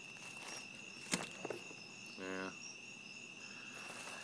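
Crickets trilling steadily in the night background. A sharp click comes about a second in, and a short low hum from the man a little after two seconds.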